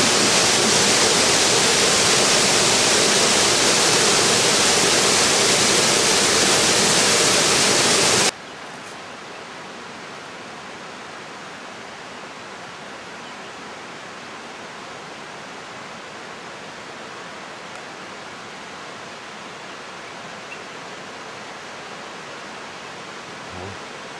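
Steady, loud rush of a waterfall pouring into a pool, cut off suddenly about eight seconds in. After that only a much quieter steady hiss remains.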